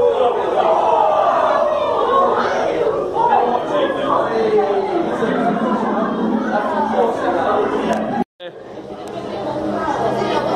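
Indistinct chatter of several voices in a large indoor hall. The sound cuts out for a moment about eight seconds in.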